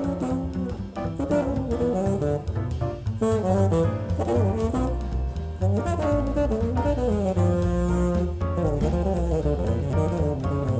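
Jazz played by a small group: a bassoon plays a moving melody over electric keyboard and a bass line.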